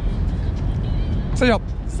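Steady low rumble of open-air background noise, with a short voice call about one and a half seconds in.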